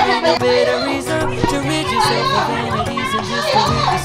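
Background music playing under a group of women laughing and calling out excitedly.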